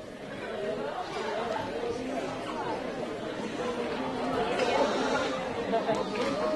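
Audience chatter in a hall: many voices talking over one another, no single speaker clear, growing louder.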